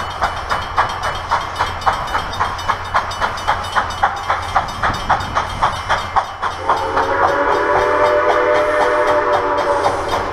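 Railroad crossing bell ringing steadily, about three strokes a second. About seven seconds in, the chime steam whistle of Grand Canyon Railway 2-8-2 locomotive 4960 starts one long blast, a chord of several notes held steady.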